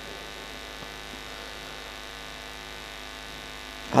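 Steady electrical mains hum with many evenly spaced overtones, unchanging throughout.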